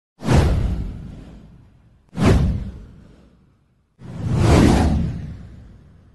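Three whoosh sound effects from a title animation, each fading out over a second or so. The first two start suddenly, at the start and about two seconds in. The third swells up more gradually about four seconds in.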